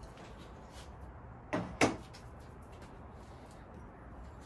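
Two short knocks about a quarter second apart, the second the louder: hard fired ceramic being set down and handled.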